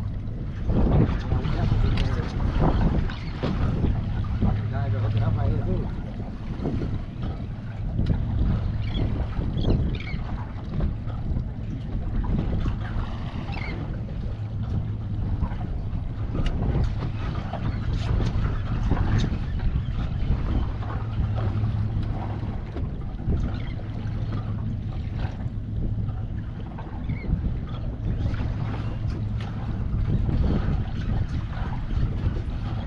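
Boat engine idling with a low steady hum, with wind buffeting the microphone and water splashing at the hull.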